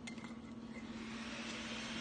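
Glass spice grinder clinking lightly a few times as it is handled over a plate, then a soft hiss that builds toward the end.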